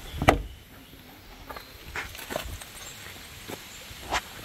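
A single sharp click about a third of a second in as the Mazda RX-8's rear side window catch is worked, then a few faint scattered steps and ticks.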